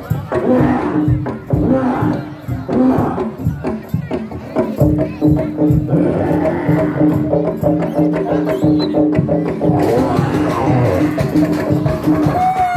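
Live traditional East Javanese accompaniment for a Bantengan performance: a percussion ensemble with drums and struck metal keys playing a fast run of short repeated notes. A steady held drone joins about five seconds in.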